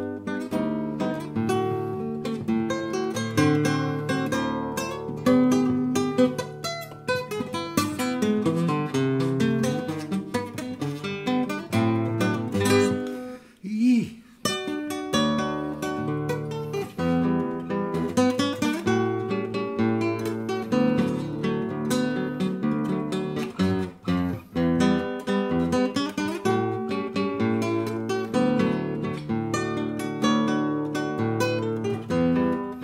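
Nylon-string flamenco guitar played fingerstyle: a steady run of plucked melody notes over a bass line, with a brief break about halfway through.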